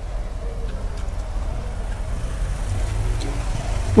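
Steady low rumble of outdoor background noise, with faint voices now and then.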